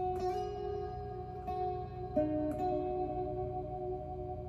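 Fender Stratocaster electric guitar playing a slow instrumental melody: about five single notes picked and left to ring into one another.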